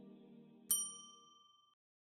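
A single bright notification-bell ding, struck once and ringing out over about a second, from a subscribe-button animation. Soft background music fades out under it.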